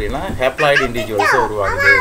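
Speech only: the teacher's voice talking, lecturing continuously.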